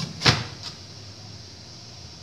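A glass lid being set onto an aluminium steamer pot: one sharp clink about a quarter second in, then a lighter tick, then a low steady background.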